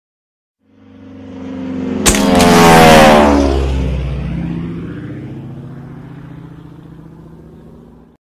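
A propeller-driven piston aircraft flying past. Its engine rises out of silence, is loudest about three seconds in, then fades as it recedes. A sharp crack comes about two seconds in.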